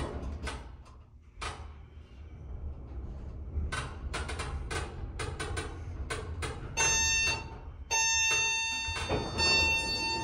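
Montgomery Vector hydraulic elevator car travelling up with a low hum and scattered clicks. From about seven seconds in, three steady electronic tones sound one after another as the car arrives at the floor.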